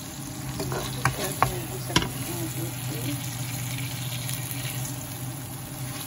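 Onion, ginger and tomato sizzling in oil in a nonstick frying pan, with a wooden spatula stirring and a few sharp knocks against the pan about one to two seconds in. A steady low hum runs underneath.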